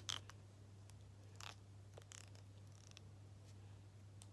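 Scissors snipping close to the microphone in a mock haircut: a few soft, irregularly spaced snips over a steady low hum.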